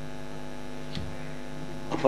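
Steady electrical mains hum from the microphone and sound system, with a faint click about a second in.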